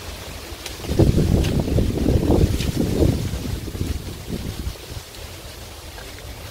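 Wind buffeting the microphone, a low rumble that swells into a gusty burst about a second in and dies back after about three seconds.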